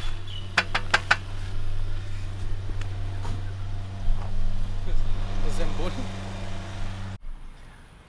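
A vehicle engine idling nearby with a steady low hum. A quick run of four or five sharp clicks comes about a second in. The hum stops abruptly near the end.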